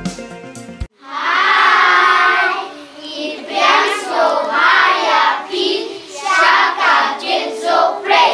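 Intro music cuts off abruptly just under a second in. A group of children then sing together without instruments, starting on a long held note and going on in short phrases.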